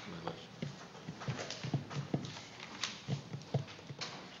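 Irregular light knocks and clacks, several a second, with faint murmured voices.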